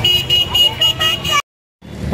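Light-up plastic toy bird sounding a high electronic beep that pulses on and off several times a second over crowd noise, then cutting off abruptly after about a second and a half.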